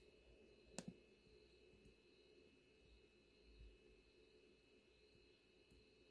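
Near silence: room tone, with a faint double click about a second in, a computer mouse being clicked.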